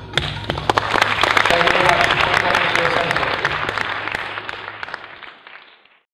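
Audience applauding. The clapping starts suddenly, is fullest in the first few seconds, then thins and fades away near the end.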